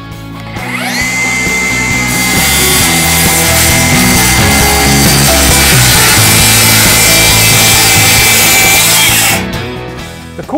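Milwaukee FUEL brushless cordless circular saw spinning up with a rising whine, then cutting through a waterproof backer board in one long steady pass. The motor winds down about a second before the end.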